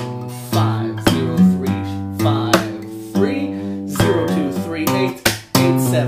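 Takamine acoustic guitar played percussive fingerstyle: open bass notes and hammer-ons, fretboard taps pulled off to lower notes, and hand slaps on the strings that give sharp hits among the ringing notes.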